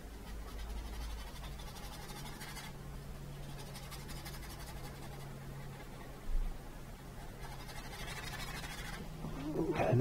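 Quiet room with a steady low electrical hum and faint scratchy brushing of a paintbrush working acrylic paint on canvas and palette. There is a single soft low bump about six seconds in.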